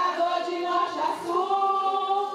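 A group of people singing together without accompaniment, holding long notes in unison.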